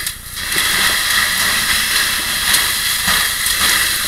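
Fire hose nozzle spraying water onto burning pallets and straw: a loud, steady hiss of water spray and steam that starts about half a second in.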